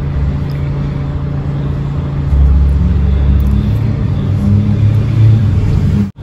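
A loud, low, steady rumble with a constant hum, growing louder about two seconds in.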